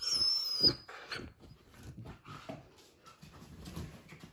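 A rubber squeaky toy squeaking as a puppy bites it: one long high squeak, a loud thump just under a second in, and a shorter squeak just after. Softer scuffling of paws and bedding follows.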